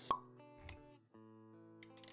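A short, sharp pop sound effect near the start, then a softer low thump, over background music with held notes.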